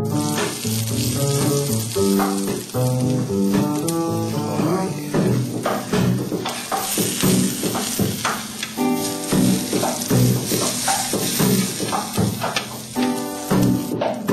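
Bacon-wrapped hot dog and sliced onions sizzling in a hot griddle pan, with a spatula scraping and pushing the onions around about midway. Background music with pitched notes plays over the frying.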